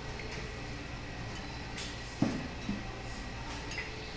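Bar tools handled on a bar top: a sharp knock about two seconds in and a lighter one just after, as the metal jigger, shaker tin and rum bottle are worked, over a steady low hum.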